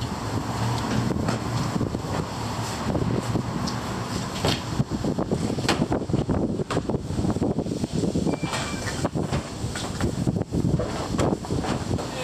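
Car-wash foam brush scrubbing a car's soapy body and windows in irregular swishing strokes, with wind buffeting the microphone.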